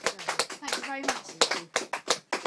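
A small audience clapping at the end of a song, the separate hand claps distinct and irregular, with a voice briefly calling out about a second in.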